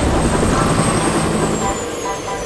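Helicopter flying past: a loud, rapid low rotor chop, with a thin high whine that holds and then falls in pitch over the second half.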